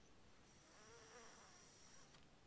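Near silence, with a faint buzz of a flying insect passing the microphone for about a second midway, its pitch wavering.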